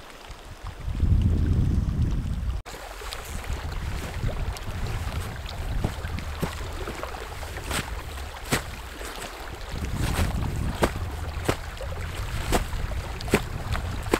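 Low wind rumble on the microphone for about two seconds, cut off suddenly. Then steady low wind noise with irregular sharp crunches of snowshoes stepping in powder snow.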